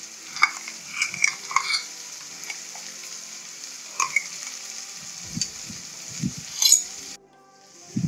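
Sliced onions and green chilli paste sizzling in hot oil in a non-stick kadai: a steady high hiss with scattered pops and crackles. It cuts off abruptly about seven seconds in.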